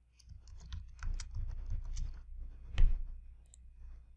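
Typing on a computer keyboard and clicking: a run of quick, uneven keystrokes, with one louder click a little before three seconds in.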